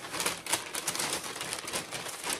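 Kraft paper rustling and crinkling as a paper package is handled and opened, in a quick irregular run of small crackles.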